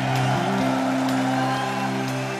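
Live J-pop band playing an instrumental passage with held, sustained chords and no vocal.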